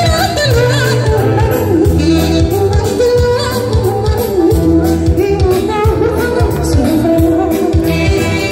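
Live Eritrean band music, played loud: a woman sings a wavering melody over keyboard, electric guitars and a steady drum beat.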